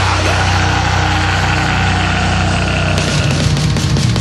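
Black metal music with no vocals: a low, steady distorted chord drones on, and cymbals come in about three seconds in.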